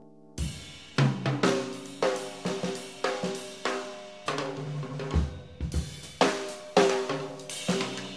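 Jazz drum kit entering about half a second in, playing loose, unevenly accented hits on snare, cymbals and bass drum, with pitched chords ringing under the strokes.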